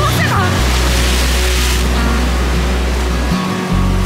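Background music with a steady bass line, mixed over waves breaking and washing against jetty rocks; the surf is strongest in the first couple of seconds.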